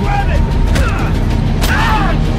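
A fight inside a moving car, heard as a film sound mix: the vehicle's low running rumble under the scuffle's thumps and grunts, with a sharp hit about one and a half seconds in.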